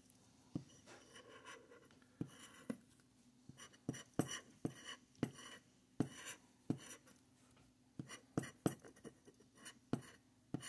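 Plastic scratcher tool scraping the coating off a scratch-off lottery ticket in short, irregular strokes, one or two a second.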